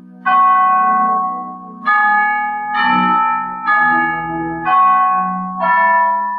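Piano music played slowly: full chords struck roughly once a second, each ringing out and fading, over a held low note.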